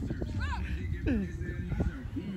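Players' voices calling out across the field in short, scattered shouts, with a low rumble of wind on the microphone underneath.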